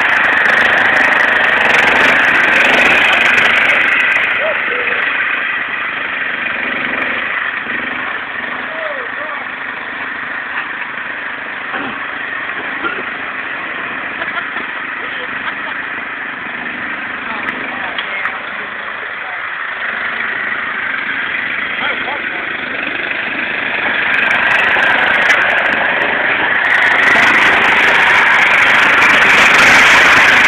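Engine of a John Deere riding lawn tractor running as it is driven off-road. It is louder at the start and again in the last few seconds, when the tractor is close, and quieter through the middle as it drives off among the trees.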